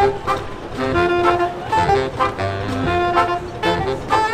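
Small brass band playing a jazzy tune, trombone among the horns, with held melody notes changing every half second or so over a low bass line.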